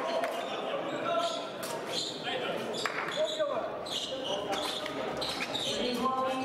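Épée fencers' footwork on the piste: irregular thuds and stamps of their shoes as they advance and retreat, over steady background chatter in a large hall.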